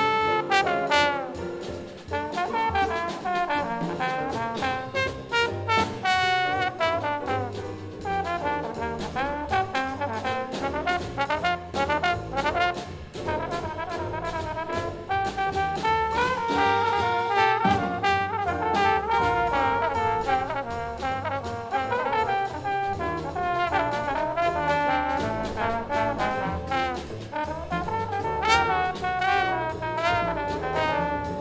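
Jazz group playing: two trombones carrying the melody together over double bass and drum kit with cymbals.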